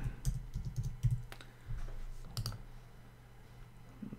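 Typing on a computer keyboard: a quick, uneven run of keystroke clicks that stops about two and a half seconds in.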